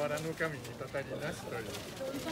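A bird cooing over people talking.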